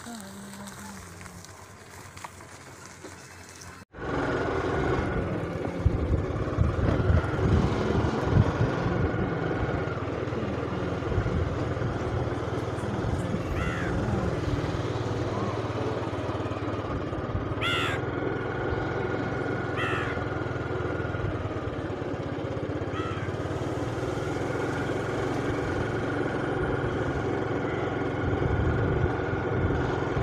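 Motor scooter engine running steadily while riding, with wind rumble on the microphone, starting after a sudden cut about four seconds in.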